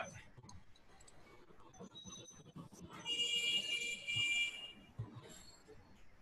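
An electronic beeping tone, steady and high-pitched, sounds for about a second and a half starting about three seconds in. A shorter, fainter beep comes about two seconds in.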